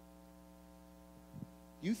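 Steady electrical mains hum in the sound system: a low, even buzz made of several steady tones. A brief soft sound comes just before a man's voice starts near the end.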